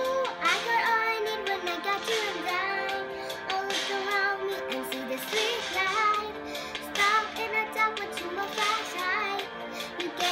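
A young girl singing a pop ballad, accompanying herself on a digital piano.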